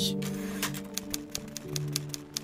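Soft background music with long held notes, fading, overlaid with a typewriter key-clicking sound effect: irregular sharp clicks, about four a second.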